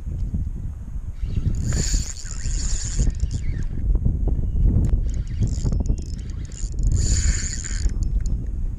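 Spinning reel cranked to retrieve a soft-plastic lure, two stretches of high whirring a few seconds apart, over steady wind buffeting the microphone.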